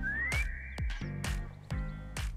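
Upbeat background music from a variety show, with a steady drum beat of about two kicks a second. A rising whistle-like slide comes right at the start and settles into a short held high tone.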